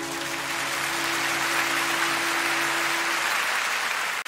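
Audience applauding at the end of a live song, with the band's last held chord fading out under it about three seconds in.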